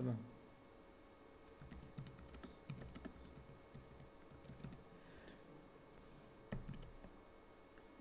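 Faint keystrokes on a computer keyboard as text is typed, in irregular short runs, with one slightly louder stroke near the end.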